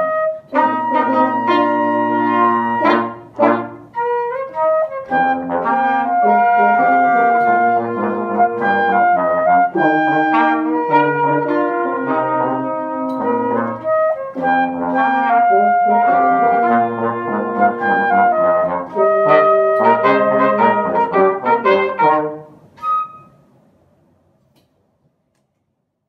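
A flute, trumpet, French horn and trombone quartet playing an instrumental arrangement of a cartoon theme song, with a brief break in the sound about three and a half seconds in. The music ends about twenty-two seconds in, leaving near silence.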